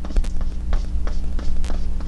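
Paintbrush dabbing paint onto a canvas on an easel: a few irregular light taps, over a steady low hum.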